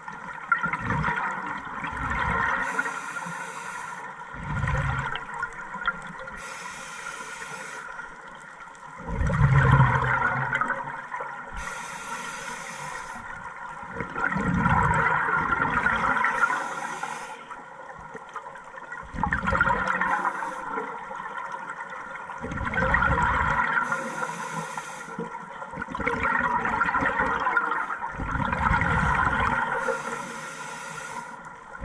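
Scuba diver breathing through a regulator underwater: a hiss of inhaled air from the regulator, then a louder gurgling rush of exhaled bubbles, the cycle repeating every few seconds.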